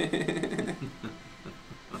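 A burst of men's laughter that starts suddenly, then breaks into short, fading bursts over about a second and a half.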